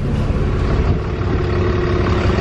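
Bus engine idling with a loud, steady hum.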